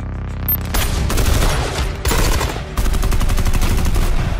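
Rapid automatic gunfire in three long bursts, the last and loudest running to the end, after a low rumble at the start.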